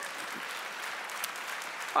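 Audience applause: a steady patter of many hands clapping that holds until speech returns at the very end.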